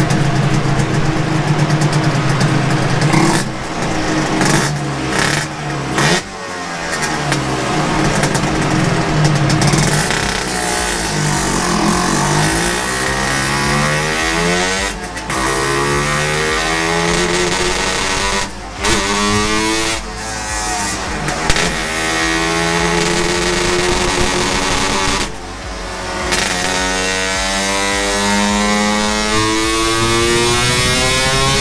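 Yamaha RXZ two-stroke single-cylinder motorcycle engine revving hard under load on a chassis dyno, its pitch climbing again and again as it is run up through the gears. Several brief sudden dips come at the shifts or throttle lifts.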